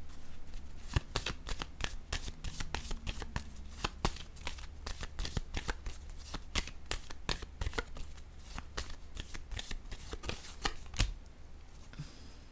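A deck of cards being shuffled by hand: a quick, uneven run of crisp card clicks for about ten seconds, ending with one louder tap near the end as a card is laid down.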